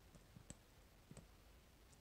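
Near silence with a few faint, short clicks: the clearest about half a second in and a close pair just after a second.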